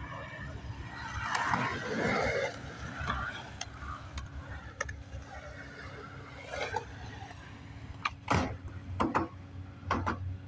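Skateboard wheels rolling on concrete, then several sharp clacks in the last two seconds as the board is popped and lands on a concrete skate box.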